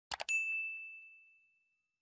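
Two quick clicks, then a single bright bell ding that rings out and fades over about a second and a half: the notification-bell sound effect of a subscribe-button animation.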